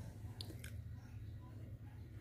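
Faint room tone with a steady low hum and two brief faint clicks about half a second in.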